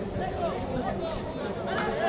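Several people talking over one another in indistinct, overlapping chatter: voices of players and onlookers at an outdoor football game.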